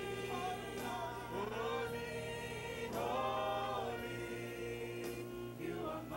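Gospel choir and worship leaders singing a praise song together, with long held notes.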